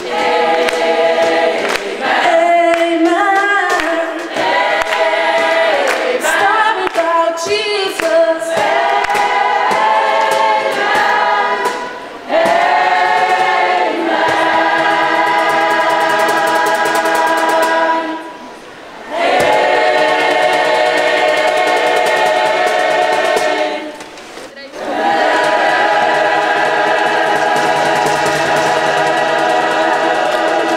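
A choir singing a Christmas song a cappella, with a solo voice on a microphone weaving wavering lines in the first several seconds. The full choir then holds long sustained chords, broken by two short pauses.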